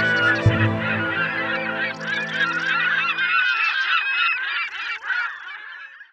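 A flock of birds honking and calling in a dense, overlapping chorus, over sustained low music chords that stop about halfway through; the calls fade out near the end.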